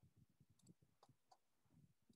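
Near silence, broken by faint irregular soft taps and a few light clicks.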